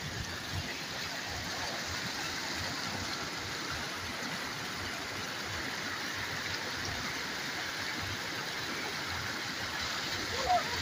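Fast-flowing shallow mountain river rushing steadily, an even wash of water noise.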